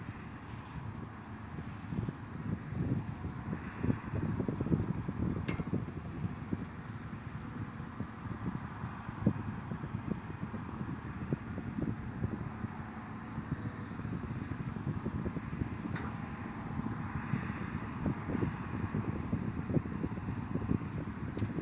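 Distant Cat D7R bulldozer's diesel engine running steadily as it works dirt, heard as a faint low hum under gusty wind buffeting the microphone.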